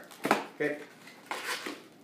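Latex modelling balloon being handled as two small white bubbles are twisted and tied together. The latex rubs against itself and the fingers in short scrapes: one sharp one about a quarter second in, and a cluster around a second and a half in.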